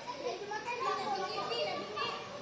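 Several children's voices calling and chattering over one another while they play.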